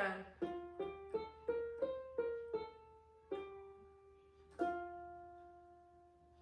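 Electronic keyboard playing a vocal warm-up arpeggio in single notes, about eight quick notes climbing and coming back down, then a last note struck a little before five seconds in that rings and fades away. It is the accompaniment played alone, with the gap left for a listener to sing along.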